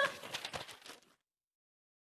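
A short burst of laughter that fades out over about a second, followed by complete silence.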